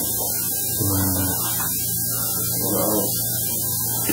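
Steady electrical mains hum on the recording, with two brief murmured, voice-like sounds, one about a second in and one about three seconds in.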